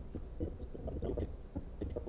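Faint, choppy snippets of audio from a video editing timeline being scrubbed, over a low steady hum.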